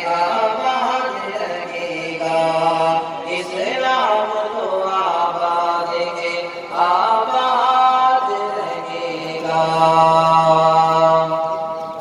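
A man singing an Urdu devotional tarana in a chanting style, holding long notes with sliding ornaments between them. The singing begins to fade near the end.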